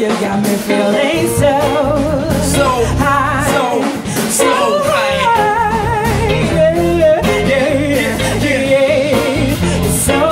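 Live band playing: a woman singing long, wavering notes over electric guitar, bass guitar and drums.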